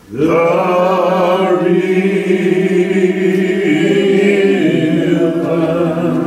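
A man singing unaccompanied in a slow, drawn-out style, holding one long note after a brief breath at the start; the pitch steps to a new note about two-thirds of the way through.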